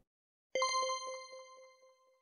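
A bell-like ding sound effect that strikes about half a second in, with a few quick ticks under it, then rings out and fades over about a second and a half.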